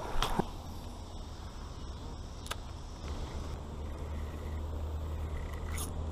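Boat motor running at a steady low idle hum, a little stronger from about halfway through. A short splash comes right at the start as a small smallmouth bass is tossed back into the river.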